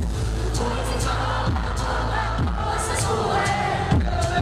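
Live hip-hop backing track played through a concert PA, with a deep bass and booming kicks that drop in pitch, under the voices of a cheering, singing crowd. Recorded on a low-quality camera microphone in an echoing ice arena, so it sounds boomy and smeared.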